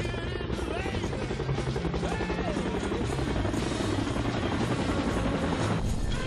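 Helicopter rotor chopping steadily, with music playing underneath. The rotor sound cuts away right at the end.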